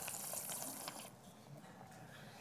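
Faint room hiss with a couple of soft clicks in the first second, then quieter.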